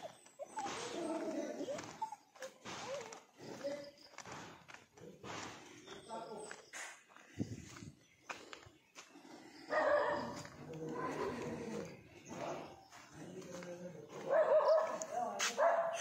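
A dog barking and whining in short bouts, with faint voices in the background; the bouts are loudest about ten seconds in and near the end.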